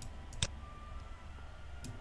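Computer mouse clicking: one sharp click about half a second in and a couple of fainter clicks, over a faint low background hum.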